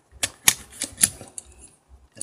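Hard plastic toy parts clicking and clacking as they are handled and snapped together, a handful of sharp clicks, the loudest about half a second in.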